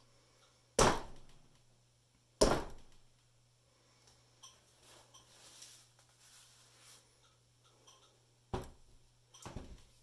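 A mallet smashing a cup of wet acrylic paint on a stretched canvas: two sharp thuds, about a second in and again a second and a half later, each dying away quickly. Two fainter knocks follow near the end.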